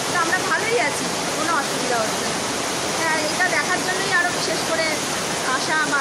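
Heavy rain falling steadily, a dense even hiss that runs under a woman's talking.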